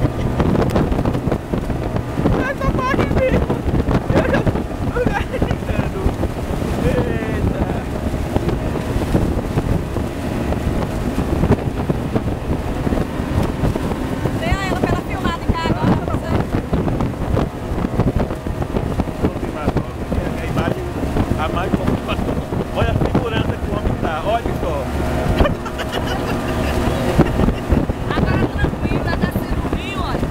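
Speedboat engine running steadily under way on the river, with wind buffeting the microphone.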